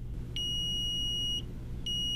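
Arcom Navigator Plus leakage meter sounding its buffer alert: a steady high-pitched electronic beep about a second long, then a second identical beep starting near the end. It is part of the three-beep warning that the data buffer is nearly full, with about 5 minutes of space left before leakage data is lost.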